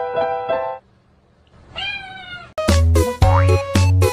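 Digital piano notes from a cat pressing the keys, stopping abruptly under a second in; after a short pause a cat gives one meow, and then loud, bouncy music with a heavy bass beat starts about two and a half seconds in.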